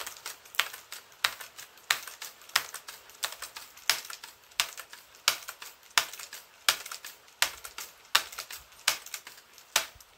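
Rainwater dripping onto a hard surface: irregular sharp ticks, a larger one every half second to a second with fainter ones between.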